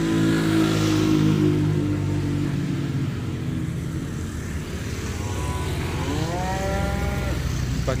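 A calf moos once, about five seconds in, with a call that rises in pitch and lasts about two seconds. Before it a steady engine hum, likely a passing road vehicle, fades out over the first few seconds.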